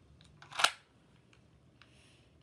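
A toy dart blaster being fired: one sharp, loud pop about half a second in, with a few faint plastic clicks from handling it.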